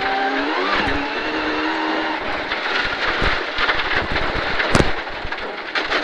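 Rally car heard from inside the cabin on a gravel stage: the engine pulls hard with its pitch climbing over the first second and holding, then the driver lifts and brakes as speed drops from about 95 to 47 km/h for a junction, with gravel rattling under the car. There is a sharp knock about a second in and a louder bang about five seconds in.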